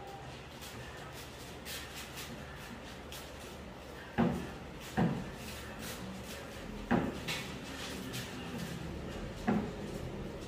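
Wooden spoon stirring stiff cookie dough in a glass mixing bowl: soft scraping strokes, with four sharp knocks from the stirring in the second half, the loudest sounds.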